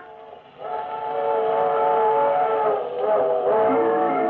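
Steam locomotive whistle sound effect: a chord of several steady tones that starts about half a second in, just after a music chord cuts off, and wavers in pitch near the end, over a faint low rumble of a running train.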